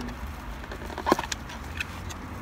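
Faint crackling and clicking of food packaging being handled as a hot baked potato is opened, over the low steady hum of a car interior, with one short pitched squeak about a second in.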